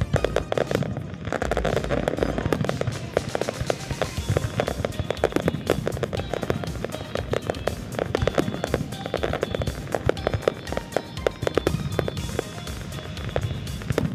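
Aerial fireworks shells bursting in a dense, continuous barrage of bangs and crackles during a large display finale.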